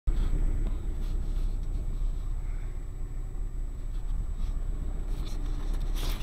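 Suzuki Alto on the move, heard from inside the cabin: a steady low rumble of engine and road noise, with a few faint clicks.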